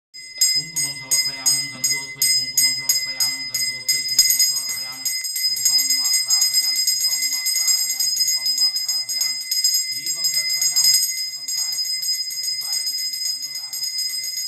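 Brass puja bell rung during the lamp offering (aarti): struck about three or four times a second for the first four seconds, then rung rapidly and without a break. A low voice chants underneath.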